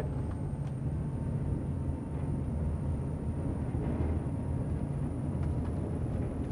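Twin 1,200hp MAN V8 diesel engines of a Princess F65 motor yacht under full throttle, pulling up towards about 2,200 RPM, heard inside the enclosed lower helm as a steady low drone. A faint high whine climbs slowly throughout.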